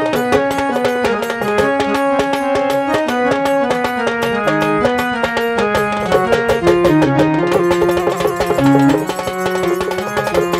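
Instrumental interlude of a Bengali baul song: an electronic keyboard plays a melody in held, stepping notes over a fast, steady hand-played dhol rhythm, with no singing.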